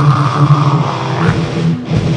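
Melodic death metal band recording: heavily distorted electric guitars playing. A high held note drops out just over a second in, leaving the low riffing.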